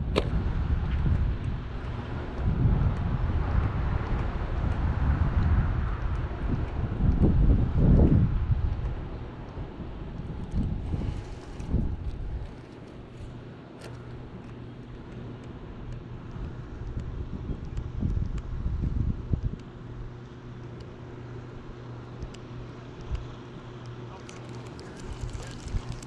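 Wind buffeting the microphone in gusts, loudest in the first half and easing after about twelve seconds, over a faint steady low hum.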